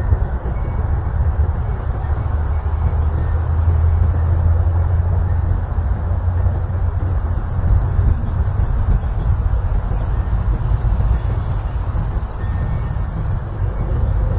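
Wind rumbling on the microphone, with a few light, high-pitched tinkles from a small metal wind chime clustered in the middle.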